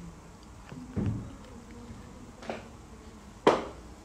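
Handling noise: three separate knocks and thumps as the phone is picked up and moved away from a plate. The first is a low thump about a second in, and the sharpest and loudest comes near the end.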